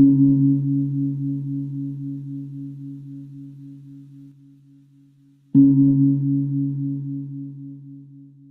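A singing bowl struck twice, about five and a half seconds apart; each strike rings with a low, wavering hum that slowly dies away.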